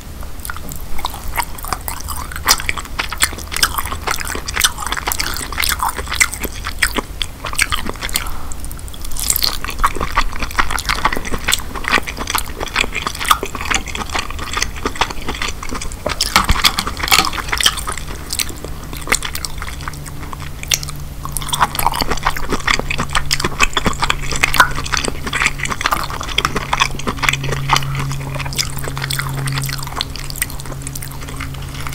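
Close-miked wet chewing and smacking of king crab meat, with dense, irregular crackling clicks as fingers pick the meat from pieces of crab shell.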